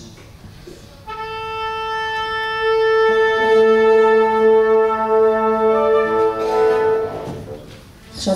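Orchestra tuning before playing. One wind instrument holds a steady tuning note, and a couple of seconds later other instruments join on the same pitch, one of them an octave below, before the sound dies away near the end.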